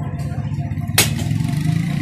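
Long-nose pliers prying at a microwave magnetron's metal cooling fins give one sharp metallic click about a second in. Under it an engine idles with a steady low rumble throughout.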